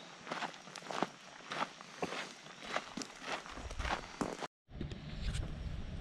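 Footsteps of hikers crunching on a gravel road, about two steps a second. The sound breaks off abruptly about 4.5 s in and gives way to a low steady rumble.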